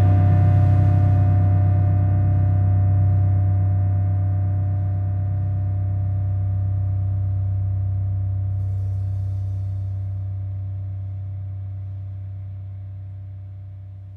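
A rock band's amplified instruments hold a final low note or chord, a steady drone that slowly fades away.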